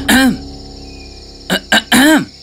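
Short, startled wordless exclamations from an animated character's voice, each falling in pitch: one at the start and another at the end, with sharp clicks just before the second. A steady chirring of crickets runs underneath.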